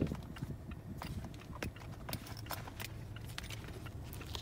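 Low, steady hum of a car's idling engine inside the cabin, with scattered small clicks and knocks as items are handled while the driver's licence and papers are fetched.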